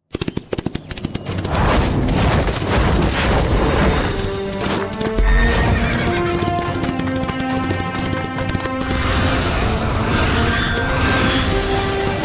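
Sound effects of a galloping horse, with rapid hoofbeats and a neigh, over dramatic soundtrack music that swells in after a few seconds. A deep low hit comes about five seconds in.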